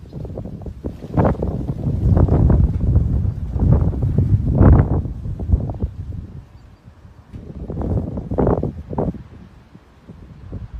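Gusts of wind buffeting a phone's microphone, coming in irregular surges, heaviest in the first half and again briefly near the end.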